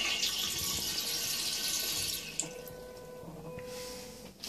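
Electronic bidet toilet flushing: water rushing and swirling in the bowl, easing off about two seconds in to a quieter wash with a faint steady tone.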